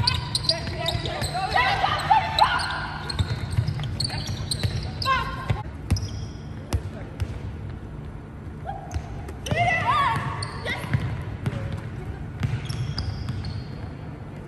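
Netball training on an indoor wooden court: sharp knocks of the ball being caught and of players' feet, brief shoe squeaks, and players' shouted calls, all echoing in a large empty hall.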